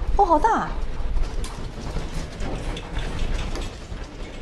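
A woman's short, high-pitched cry that falls in pitch, just after the start, followed by a few light knocks and clicks.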